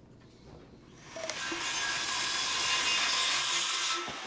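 A loud rushing hiss swells up about a second in and holds steady, falling away at the end. It is the sound effect of the channel's logo sting at the close of the video.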